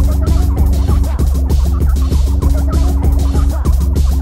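Free-party tekno live set: a steady heavy bass and a fast, dense beat, with short chirping, gobbling synth blips riding over it.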